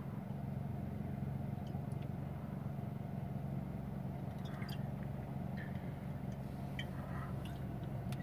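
Steady low hum of a car's engine idling, heard from inside the cabin, with a few faint light clicks scattered through it.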